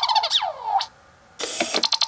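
Code & Go Robot Mouse toy: an electronic sound effect whose pitch rises and then falls over the first second. Near the end comes a quick rattle of clicks from its geared drive as it rolls forward one square to the cheese.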